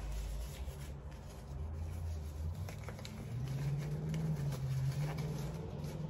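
A low steady hum that steps up in pitch twice, with faint crinkles and ticks from a disposable plastic glove being pulled on.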